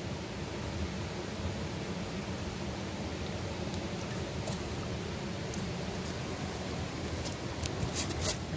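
Steady rush of a shallow river, with water washing in and off a gold pan as it is dipped and tipped in the stream during the final wash-down of a pan of gravel and black sand, and a few faint light ticks.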